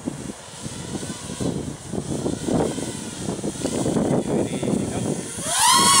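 Walkera Furious 215 racing quadcopter's brushless motors and three-blade props buzzing in flight, growing louder as it comes closer. Near the end a loud whine rises and then falls in pitch as it speeds past fast.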